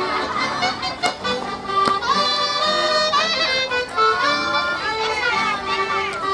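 Old Berlin dance music in the style of the 1910s and 1920s, playing steadily for the dancers.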